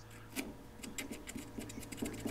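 Sharpie marker rubbed on a steel drill bit in a lathe's tailstock chuck to mark the drilling depth: a faint run of short strokes, about seven a second, starting about half a second in.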